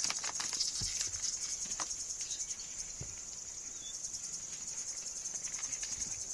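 Cricket trilling steadily in a high, fast-pulsing drone, with a few soft knocks and rustles.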